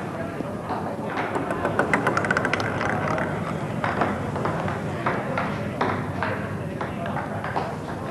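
Table tennis ball clicking on a table. About two seconds in it gives a quick run of bounces that come faster and faster as the ball settles, then scattered single clicks follow.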